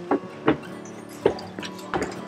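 Footsteps going up stairs: four sharp steps about half a second apart, over a faint steady hum.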